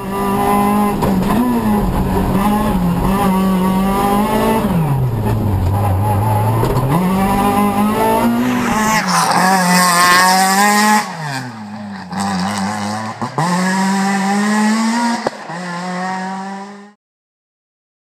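Renault Twingo R2 Evo rally car's 1.6-litre four-cylinder engine held at high revs, heard first from inside the cockpit, where the revs fall away for a corner about five seconds in and then climb again. About halfway through it is heard from the roadside as the car goes through a tight bend, the revs dipping and rising twice before the sound cuts off about a second before the end.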